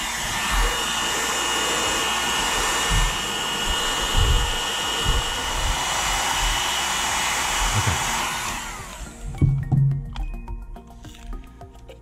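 Handheld hair dryer blowing steadily with a faint motor whine, switched off about eight or nine seconds in and winding down. It is heating a glued-on plastic cover to soften the glue.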